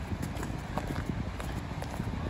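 Footsteps on wet, slushy asphalt at a steady walking pace, about two steps a second, over a low steady rumble.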